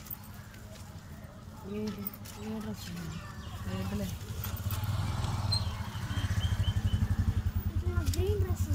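A motor vehicle's engine running, growing louder from about halfway through with a fast, even throb. Faint voices talk in the first half.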